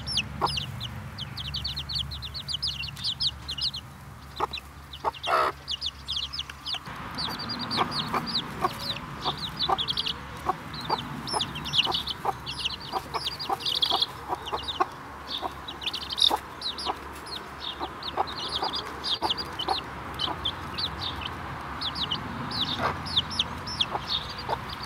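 Young chicks peeping in a rapid, continuous stream of short, high, falling calls, with a mother hen clucking low now and then among them.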